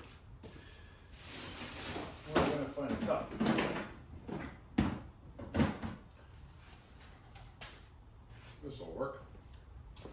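Off-camera rummaging for a cup in a workshop: a run of sharp knocks and clatter, like a cabinet door opening and closing and things being moved about, mostly between two and six seconds in, with a few lighter knocks near the end.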